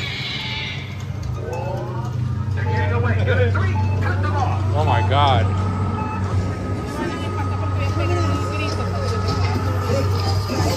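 Themed dark-attraction soundtrack: a steady low hum under music and warbling, swooping sound effects mixed with voices, with a thin steady tone entering about halfway through.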